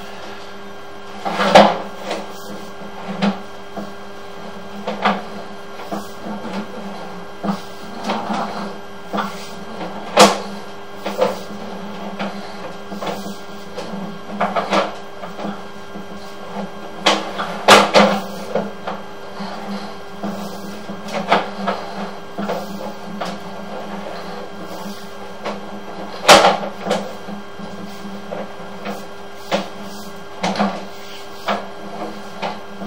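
Sewer inspection camera push cable being fed down the pipe: irregular clacks and knocks from the cable and reel, a second or two apart, over a steady hum.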